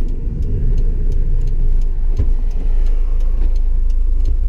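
The 1988 Honda Acty's 550 cc three-cylinder engine running at low speed, heard from inside the cab together with road noise, with a single knock about halfway through.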